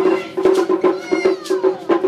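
Taiko drums struck in a quick, steady run of about five strokes a second. About halfway through, a high voice cries out, sliding down in pitch over nearly a second.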